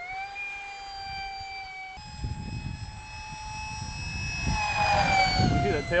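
Electric ducted fan (out of a Phase 3 F-16) on an RC-converted foam glider, whining in flight. The whine rises slightly in pitch at the start and holds steady, then grows louder and drops in pitch near the end. A low rumble comes in from about two seconds in.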